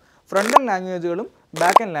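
Speech only: a man's voice says two short phrases, with a brief pause before and between them.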